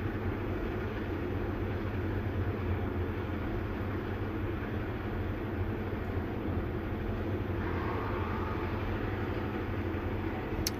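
Steady low rumble with no breaks or distinct events, like the cabin noise of a running vehicle.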